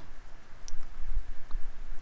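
Computer mouse clicks: a couple of short, light clicks about a second apart, over a low background rumble.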